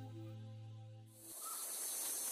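The last held chord of a theme tune fading out, then about a second and a half in a steady high-pitched chorus of forest insects sets in.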